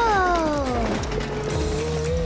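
Cartoon soundtrack: background music with a clicking, ratchet-like sound effect. A pitched tone falls away over the first second, then a steady tone holds and begins to waver near the end.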